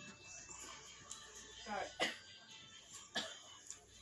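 Quiet eating sounds: a short hummed 'mm' near the middle and two sharp clicks, over faint background music.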